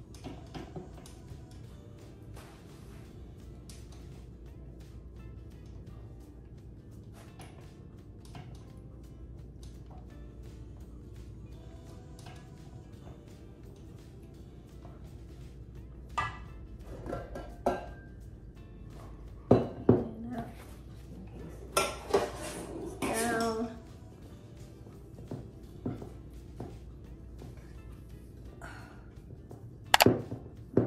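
A silicone spatula scraping batter off a stand-mixer beater and around a stainless-steel mixing bowl. Several loud metallic clinks and clangs of the bowl come past the middle, a cluster of them ringing briefly. Soft background music runs underneath.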